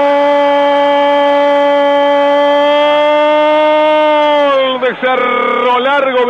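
Radio football commentator's drawn-out goal cry on a penalty kick that has just been scored: one long note held steady for about four and a half seconds, then dipping in pitch and breaking into fast, excited speech near the end.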